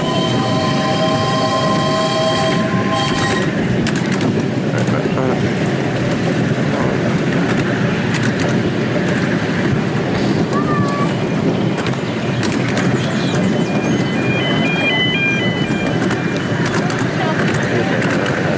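A miniature steam locomotive's whistle sounds once for about three seconds at the start. Under it and throughout, the train runs steadily along the track, heard from a passenger car.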